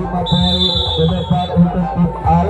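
A referee's whistle blown once in a single high, steady blast lasting just over a second, heard over background music and crowd chatter.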